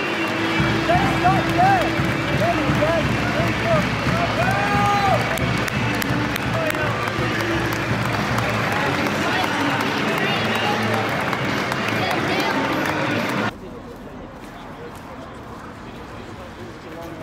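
A large crowd of football supporters singing and chanting in a stadium, with clapping. About thirteen seconds in, the sound cuts abruptly to much quieter outdoor street noise.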